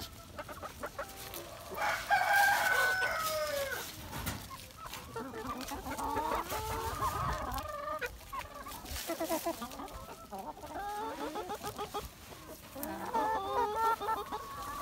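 A flock of free-range hens clucking, with a rooster crowing once about two seconds in, the loudest call. Short clucks carry on after it and grow busier near the end.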